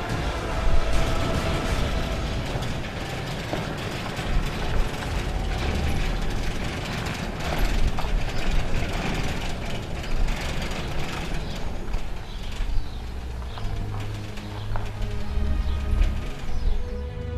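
Electric sliding gate closing: the gate motor's gears running and the steel gate rolling along its ground track, a continuous mechanical run with many small clicks.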